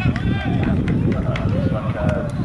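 Men's voices calling out across an open football pitch, strongest in the first half second, over a steady low rumble.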